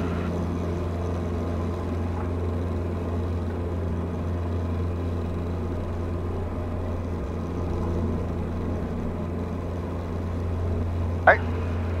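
Diamond DA40's four-cylinder piston engine and propeller at full throttle on the takeoff roll, heard from inside the cabin as a steady, even drone.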